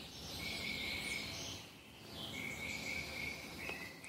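Faint insects trilling in the background: two steady, high-pitched trills of about a second each, with a few faint chirps above them near the start.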